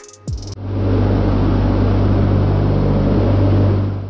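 Loud, steady drone inside the cockpit of a Tu-95 bomber in flight: its turboprop engines and contra-rotating propellers, with a deep, even hum under a wash of noise. It comes in about half a second in, after a moment of background music with a deep kick drum.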